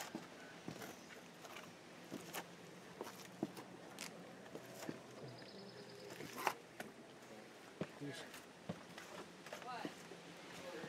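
Faint footsteps and scattered light knocks and scrapes on rock, a few each second or so, one knock louder than the rest about six and a half seconds in.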